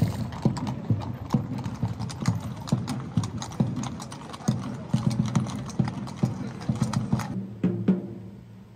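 Several horses' hooves clip-clopping on stone paving, many sharp, irregular hoofbeats overlapping. The hoofbeats drop away just before the end.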